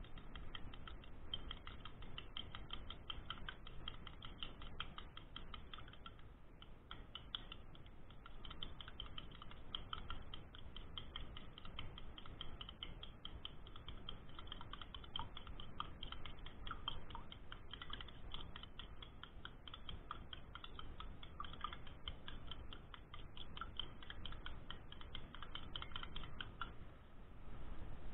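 Metal spoon beating raw eggs in a glass bowl: rapid, continuous clicking of the spoon against the glass, easing off briefly about six seconds in.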